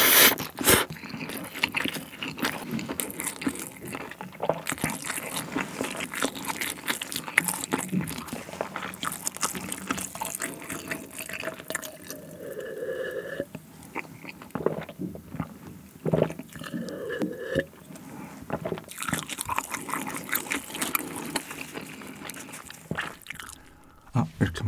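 Close-miked eating sounds: a loud slurp of saucy spaghetti at the start, then wet chewing with small mouth clicks. Twice in the middle come swallowing gulps of a drink.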